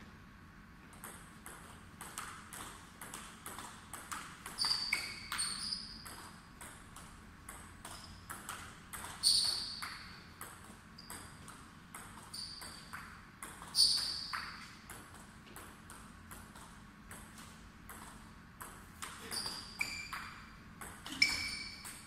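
Table tennis ball clicking off the paddles and table in several rallies, each hit a short bright ping. The loudest hits come about nine, fourteen and twenty-one seconds in.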